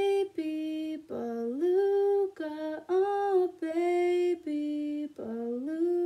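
A woman singing a slow children's song alone, without accompaniment, in a string of held notes with short breaks between them, two of them sliding up in pitch.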